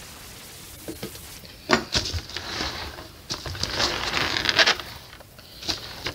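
Plastic wrap crinkling and scraping in several short bursts as a painted canvas is handled on its plastic-covered stand, the longest about three seconds in. A palette knife makes a light knock near the end.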